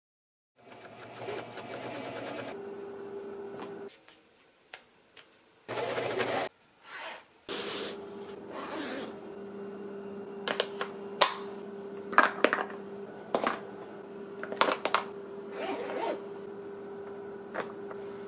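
Hands handling a zippered denim bag: short rustles and clicks of denim and zipper, over a steady low hum.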